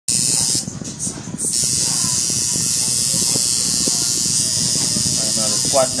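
Electric tattoo machine buzzing steadily as the needle works ink into skin, cutting out briefly near the start before running on.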